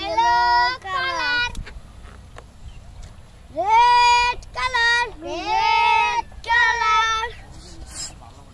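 A child singing a short wordless tune in held notes: one phrase at the start, then several more from about three and a half seconds in.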